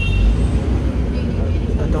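Low, steady engine and road rumble heard from inside the cabin of a moving city bus.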